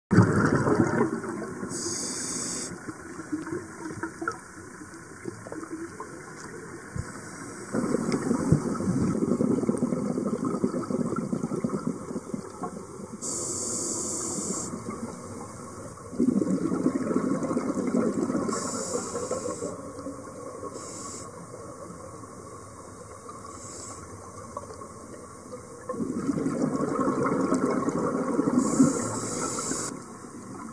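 Scuba diver breathing through a regulator underwater: a short hiss of each inhalation followed by several seconds of bubbling exhaust as the breath is let out, repeating about every eight to ten seconds.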